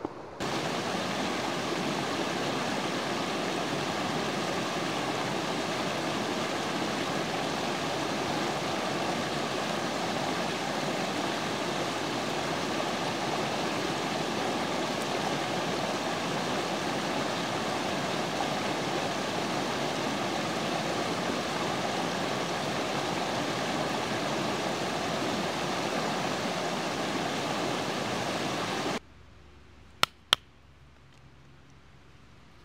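Shallow rocky creek rushing steadily over stones, stopping abruptly near the end.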